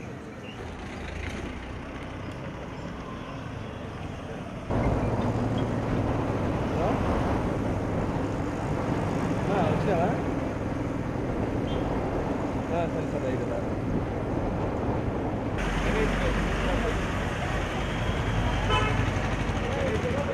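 Street traffic noise with people's voices in the background. The sound jumps abruptly louder about five seconds in and changes character again about sixteen seconds in, as the shots are cut together.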